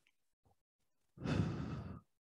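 A man's heavy exhale, a single breathy rush of under a second starting a little past halfway, taken with the effort of a bicycle-crunch twist.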